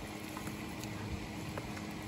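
Water from a splash-pad sprinkler jet pattering and splashing on a vinyl mat as puppies paddle in the shallow water, a steady wet hiss with a few small splashes.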